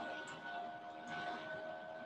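Quiet room tone with a faint, steady whine at two pitches.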